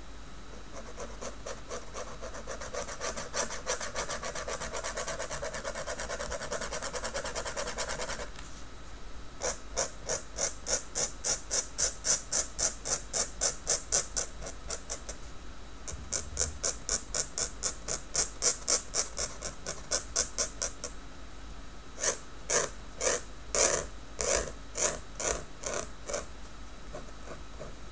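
Maru Pen dip nib scratching on notebook paper while hatching in ink. First a dense, continuous scratching for several seconds, then runs of quick, regular strokes about three a second with short pauses between them, and a few sharper, uneven strokes near the end.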